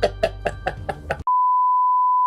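Music of quick, evenly spaced plucked notes fading out. About a second and a quarter in, it gives way abruptly to a steady, unwavering test-card beep, the tone of a TV colour-bar 'please stand by' screen.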